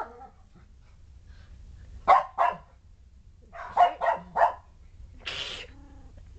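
Shetland sheepdog barking: two sharp barks about two seconds in, three more around four seconds, then one longer, higher bark just after five seconds.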